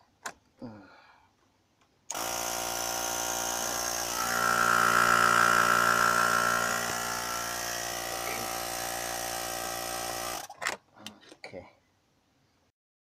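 A 12-volt portable air pump plugged into the car's cigarette lighter socket switches on abruptly and runs for about eight seconds with a steady motor whine that swells in the middle, then cuts off suddenly. Its running shows the socket has power again after the fuse swap. There are a few handling clicks before and after it.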